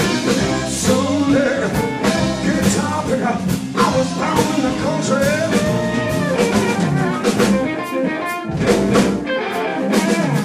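Live soul-funk blues band playing: electric guitar, bass, drum kit, electric violin and electric cello, with the drums striking steadily under bending melodic lines.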